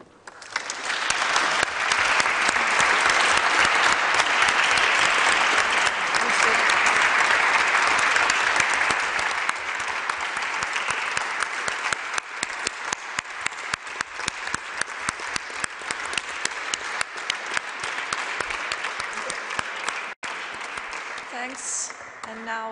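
Audience applauding. The applause builds within a second, holds full for about eight seconds, then thins into scattered individual claps.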